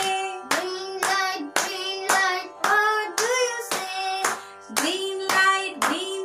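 A boy and a woman singing a children's song together, clapping along about twice a second.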